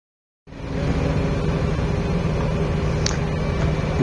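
A large engine idling with a steady, even hum, cutting in suddenly about half a second in.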